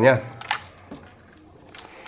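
A single sharp plastic click about half a second in, then a fainter tap, as a circuit board is shifted and set down against a fan's plastic housing.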